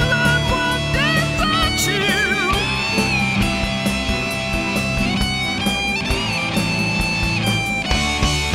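Recorded band music with no vocals: an electric guitar plays a lead line with bent notes and vibrato over bass and a steady drum beat.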